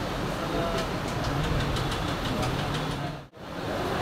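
Busy market hubbub: many overlapping voices, light clatter and a steady low rumble. The sound drops out for a moment near the end.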